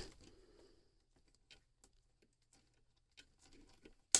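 Near silence, with a few faint clicks.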